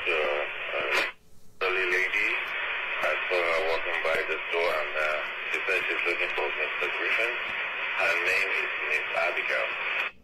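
Speech over a two-way radio, tinny and narrow-band, talking almost without pause with a short break about a second in, and cutting off abruptly at the end of the transmission.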